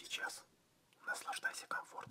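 Quiet whispered speech, in two short phrases: one at the very start and a longer one from about a second in.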